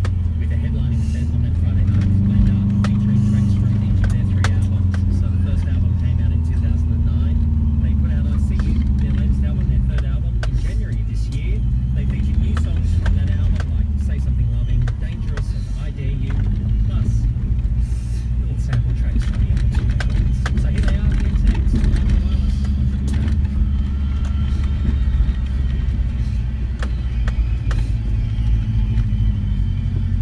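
Cabin noise of a 2004 Subaru Forester's flat-four engine pulling up a dirt hill track: a low drone that rises and falls slowly in pitch. Frequent small clicks and knocks come through from the rough surface.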